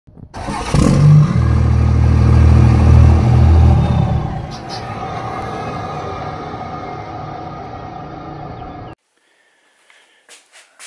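Intro sound effect: a loud low rumble that swells a moment in and holds for about three seconds, then drops to a quieter hissy tail that cuts off suddenly about a second before the end.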